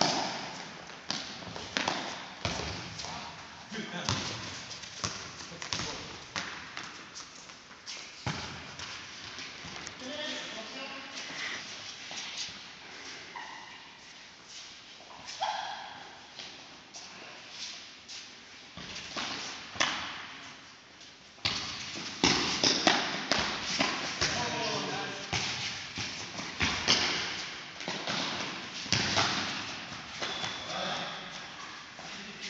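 Futsal ball being kicked and bouncing on a sports-hall floor, with running footsteps and players' shouts, all echoing in the large hall. The knocks come irregularly, often several a second, and the shouting and kicking get louder about two-thirds of the way in.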